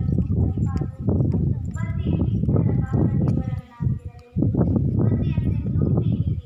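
Speech with a heavy low rumble under it, with a short break about four seconds in.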